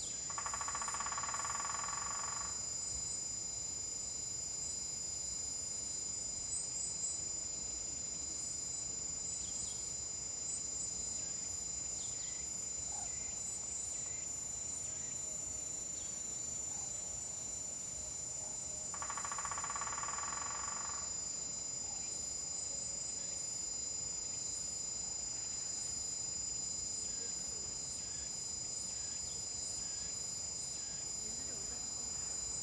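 Steady, high-pitched shrilling of autumn crickets and other insects, with faint small bird chirps. Twice, just after the start and again about 19 seconds in, a buzzing trill lasting about two seconds rises over it.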